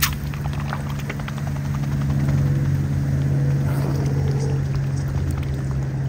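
A mute swan feeding in shallow water, its bill dabbling and splashing with small clicks, after a brief splash of scattered grain hitting the water at the start. A steady low hum runs underneath throughout and is the loudest sound.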